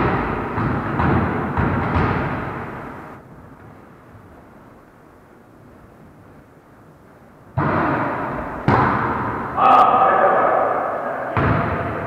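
Volleyball hits in an echoing gym: sharp, ringing smacks of the ball off hands and the wooden floor, several in the first few seconds. A quieter lull follows, then more loud hits from about three-quarters of the way in, one a sharp crack.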